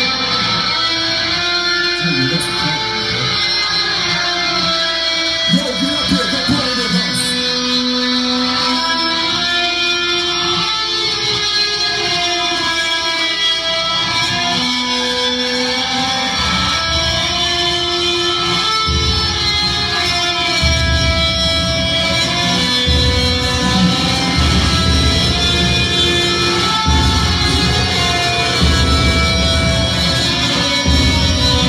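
Death metal band playing live through a club PA: electric guitars hold long ringing notes, then about halfway through heavy low-tuned chugs come in with a start-stop rhythm.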